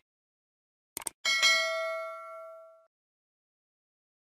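A quick few mouse clicks, then a single bell-like notification ding that rings out and fades over about a second and a half: the sound of clicking Subscribe and the notification bell.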